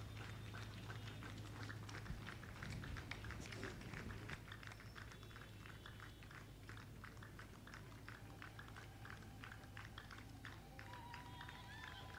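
Faint, irregular clicking and crackling over a low, steady hum, with a thin high tone near the end.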